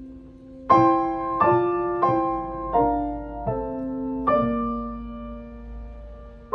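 A 1936 Blüthner Style IVa grand piano being played: a held chord fades, then six slow chords are struck about every three-quarters of a second, the last left to ring and fade.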